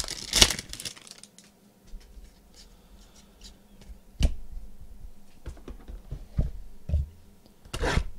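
Foil wrapper of a trading-card pack torn open and crinkled, loudest in the first half second. Then quieter rustling with a few sharp taps as the cards and the box are handled.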